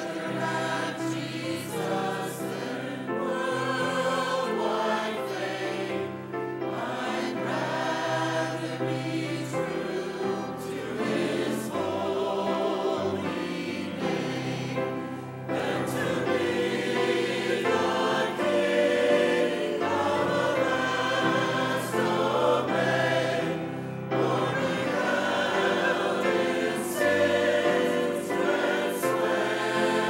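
Mixed church choir of men and women singing in harmony, several vocal parts at once, moving through sung phrases.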